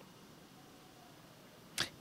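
Near silence: faint room tone during a pause, with one brief sharp sound just before the end.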